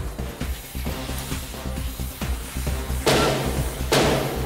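Background music with a steady, pulsing bass beat. About three seconds in, a loud, short rush of noise cuts across it.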